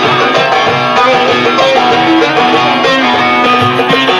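Live Turkish folk music: a plucked string instrument playing a fast run of melody notes, amplified and loud.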